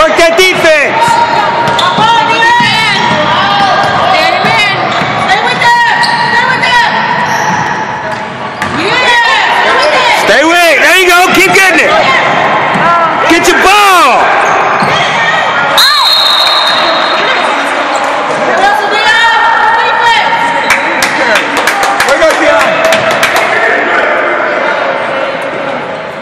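Indoor basketball game sounds echoing in a gym: a ball bouncing on the hardwood court, sneakers squeaking in short gliding squeals, and players and spectators calling out.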